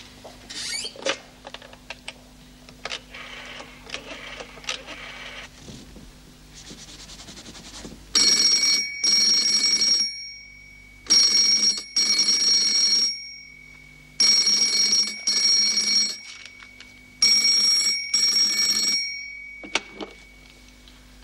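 Telephone ringing with a double ring, ring-ring, repeated four times about three seconds apart, starting about 8 seconds in. Before it, only faint scattered knocks and scrapes.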